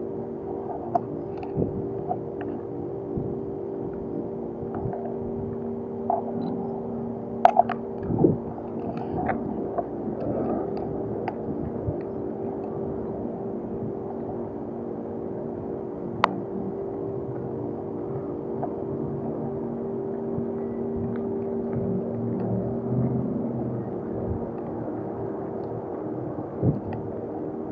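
Ambient background music of long sustained tones, laid over the live sound of walking along a gravel alley: scattered sharp clicks and crunches, with a low rumble swelling briefly near the end.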